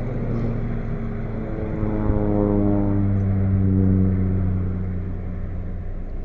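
Single-engine crop-dusting airplane flying low past with its propeller drone. It grows louder to a peak about four seconds in, and the pitch falls as it goes by.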